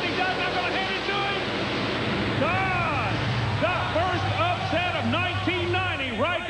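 Two monster truck engines at full throttle in a side-by-side drag race, their pitch rising and falling, over a steady roar of arena crowd noise.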